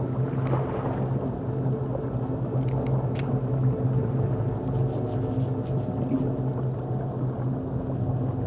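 A steady low hum over a rushing noise, with a few faint clicks.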